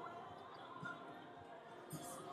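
Faint background of distant voices, with a few soft thuds of footsteps about one and two seconds in.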